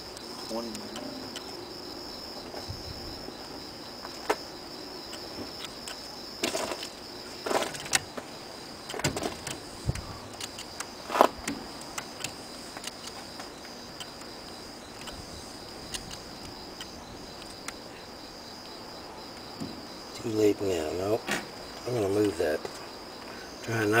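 Crickets chirping steadily in a high, even trill, with a few sharp clicks around the middle.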